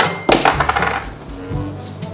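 A coin dropping with a sharp metallic clink and a brief ringing rattle, over background music.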